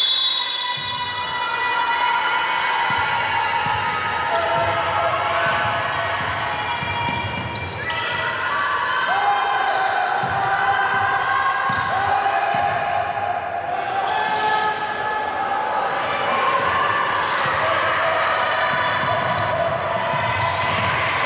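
A basketball bouncing on a hardwood court during live play, with sneaker squeaks and players and coaches calling out, heard in a large, near-empty hall.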